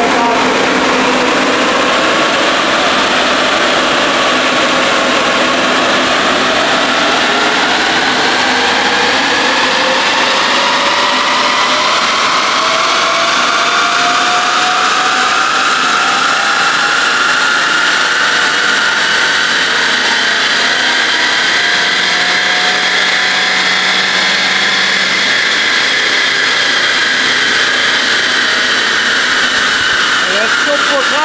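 Volkswagen Golf 6 1.4 TSI's turbocharged four-cylinder engine working under load on a roller dynamometer during a power-measurement run. Its pitch climbs slowly and steadily as the revs rise, then eases down slightly over the last few seconds, over a steady rush of noise.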